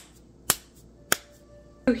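Palms slapping a lump of soft cookie dough flat between the hands: a few sharp pats about every half second.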